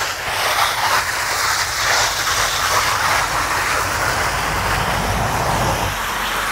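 Garden hose spraying water onto vegetable beds: a steady hiss of water, with a low rumble underneath that grows louder about four to five seconds in.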